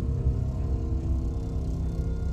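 Dark, suspenseful film score: a deep, steady rumbling drone under sustained held tones.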